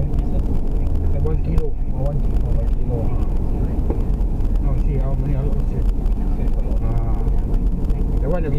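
Steady low road and engine rumble inside a taxi's cabin while cruising at expressway speed.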